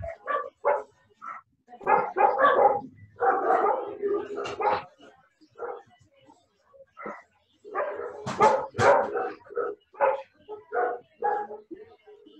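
A dog barking in short, repeated bursts, mixed with children's voices, picked up over a video call's open microphones.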